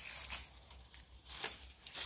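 Dry banana leaves and leaf litter rustling, with a few sharp crackles, as a bundle wrapped in banana leaves is taken up off the ground.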